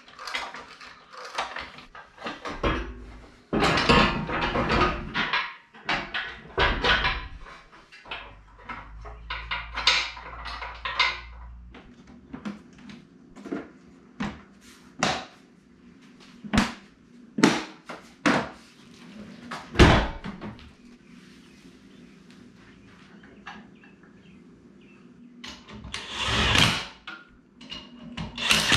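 Irregular clanks, knocks and scrapes of heavy steel parts being handled and fitted: a rear bumper and swing-out tire carrier going onto a Jeep, with a faint steady hum under them through the middle. Near the end comes a short burst from a handheld power tool running on the spare wheel's lug nuts.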